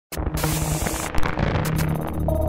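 Logo intro sting: a rush of static-like noise over a low steady drone, with a sharp hit a little after a second in, leading into electronic music.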